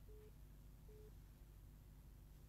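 Near silence broken by two faint, short telephone-line beeps of the same pitch, a little under a second apart, early on: a busy or call-progress tone on the studio's phone-in line.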